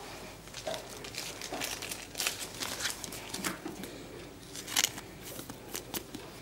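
Pokémon trading cards being handled by hand: faint, irregular rustling and light crinkling with small clicks of cards sliding and tapping together.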